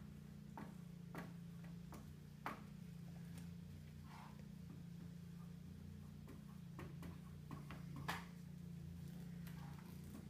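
Dry-erase marker tapping and stroking on a whiteboard as a long number is written: irregular faint ticks, bunched in the first three seconds and again in the last three, over a steady low hum.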